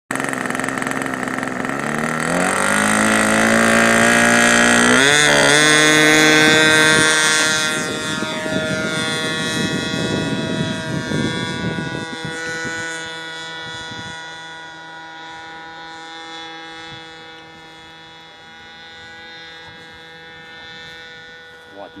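The 10 cc petrol engine of a radio-controlled model Beagle B121 runs up for take-off, its pitch rising over a few seconds to full throttle. It then holds a steady drone that grows gradually fainter as the model climbs away. A brief exclamation comes at the very end.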